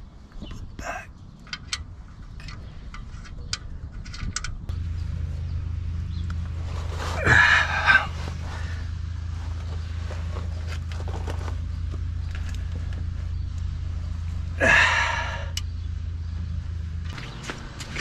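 Small metallic clicks and taps of a wrench working on the oil drain plug under a car during an oil change. About five seconds in, a steady low hum starts and runs until shortly before the end, with two short rushing noises over it.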